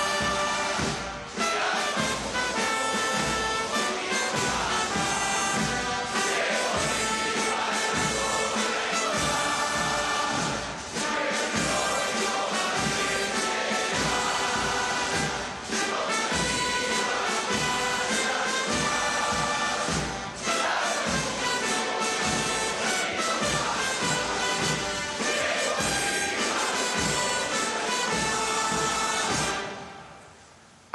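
A military brass band playing a march for the rendering of honors, with a steady beat and short breaks between phrases. It fades out near the end.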